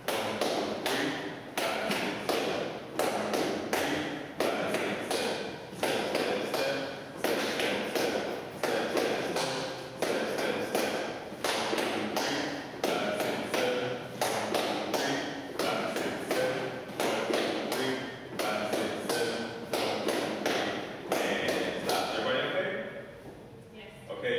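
Dance shoes stepping on a wooden floor: several people doing salsa basic steps in a steady, repeating rhythm of taps and light thuds.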